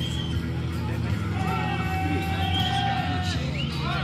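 Portable fire pump's engine running with a steady drone under loud shouting and cheering. One long held shout runs through the middle.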